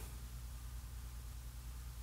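Faint room tone: a steady low hum with light hiss, and no distinct sound.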